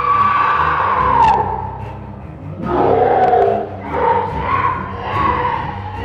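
A woman screaming in fright at a tarantula put on her: one long high scream, then three shorter screaming cries.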